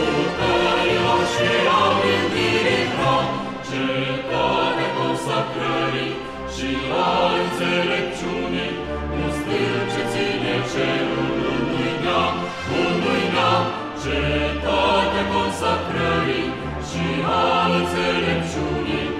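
A recorded choral composition playing: a choir singing over a deep bass accompaniment, continuously and at a steady level.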